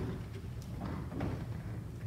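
Room tone: a low, steady hum with a sharp click at the very start, the played video heard with no sound.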